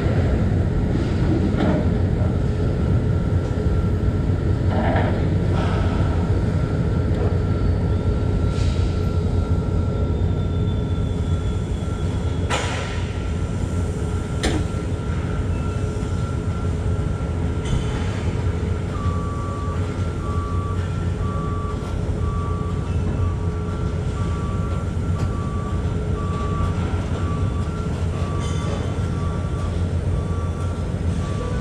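Diesel heavy equipment running steadily with a low rumble. A little past halfway a back-up alarm starts beeping about once a second, and a couple of sharp clanks come near the middle.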